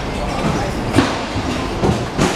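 Metal stall poles and frames clanking as market stalls are put up. Sharp knocks come about a second in and again near the end, over a steady street hubbub with voices.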